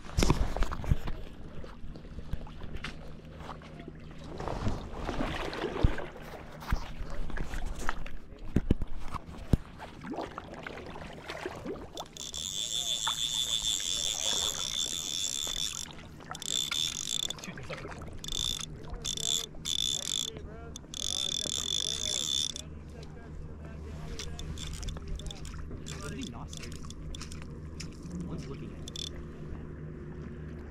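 Rustling and knocks of clothing and gear against the camera for about the first twelve seconds, then a fly reel's clicker buzzing steadily as line runs through it, breaking into several short runs before stopping about two-thirds of the way in.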